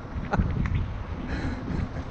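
Wind buffeting a handheld camera's microphone, with a couple of sharp clicks about a third and two-thirds of a second in.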